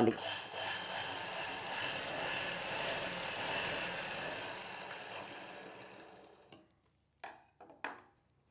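Domestic straight-stitch sewing machine stitching a seam through cotton fabric, running steadily and then slowing to a stop about six and a half seconds in, followed by a couple of faint clicks.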